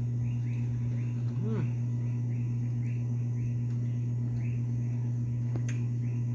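A steady low electrical hum, with a night insect chirping faintly and evenly, about two to three chirps a second.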